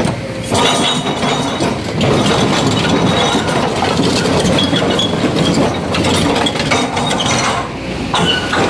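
Hydraulic crawler excavator running, with a dense, continuous clatter of broken stone knocking and clinking as its steel bucket scrapes and shifts the rock.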